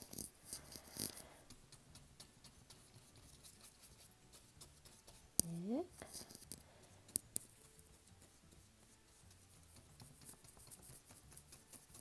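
A paintbrush brushing and dabbing acrylic paint onto paper: a soft scratchy rubbing in the first second or so, then faint. A single sharp click comes about five seconds in and two quieter clicks follow about two seconds later.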